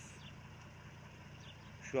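A vehicle engine idling steadily, heard as a low, even hum.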